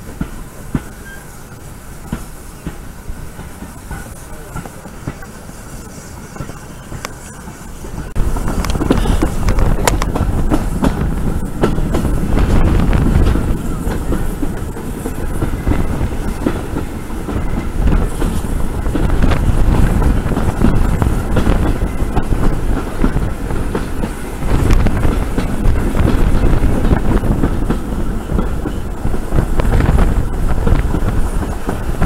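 Steam-hauled heritage train's carriages running on the track, heard from an open carriage window: a low rumble with wheel clicks over the rail joints, growing much louder from about eight seconds in.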